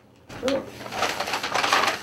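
A man's short "ooh", then a paper grocery bag rustling and crinkling as it is set down on a table and handled.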